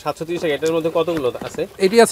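A man's voice speaking, in two stretches: one through the first second or so and another starting near the end.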